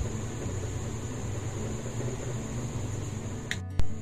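Steady low hum and hiss of background noise, with a short click about three and a half seconds in.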